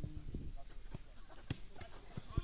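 Faint live sound of a small-sided football match: players' voices and a few short knocks, the sharpest about one and a half seconds in.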